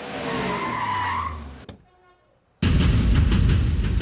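Car tyres screeching as a vehicle brakes hard to a stop for about a second and a half. After a brief silence, loud background music with heavy drum beats starts suddenly.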